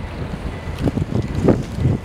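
Wind buffeting the microphone in irregular low gusts.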